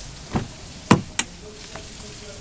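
Three sharp knocks and clunks, the loudest about a second in, from a 2005 Honda CR-V's rear door handle and latch as the door is opened.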